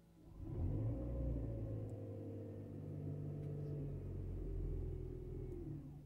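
Toyota car engine, heard from inside the cabin, revved up with the accelerator about half a second in and held at raised revs for about five seconds, then released back toward idle near the end.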